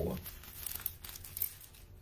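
Thin Bible pages crinkling and rustling as they are leafed through, with soft scattered crackles.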